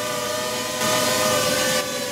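Tello mini quadcopter drone hovering, its small propellers giving a steady high-pitched whine, with a brief rush of hiss in the middle.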